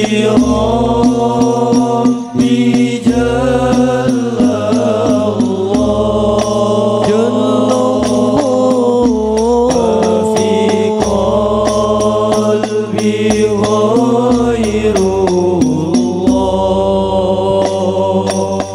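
Male voices of an Al Banjari group singing sholawat in long, drawn-out notes that slide slowly from pitch to pitch, with a steady low drone beneath.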